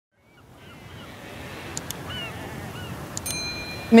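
Outdoor ambience fading in from silence: a steady wind-like wash with several short, arched bird calls. About three seconds in, a bright ringing tone is struck and holds.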